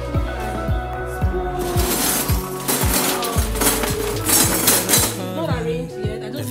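Metal and plastic kitchen utensils (spoons, ladles, a skimmer) clattering and clinking as a utensil drawer is rummaged through by hand, busiest from about two seconds in until near the end. Background pop music with a steady beat plays throughout.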